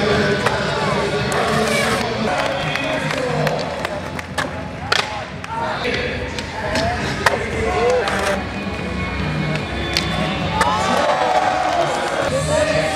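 Skateboards rolling on concrete with several sharp board impacts from landings and slaps, the loudest about seven seconds in, over background music and crowd voices.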